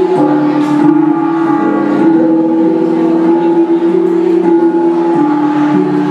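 Mường cồng chiêng gong ensemble playing: hand-held bossed gongs struck with padded beaters, their tones ringing on and overlapping into a loud layered drone that shifts pitch every couple of seconds.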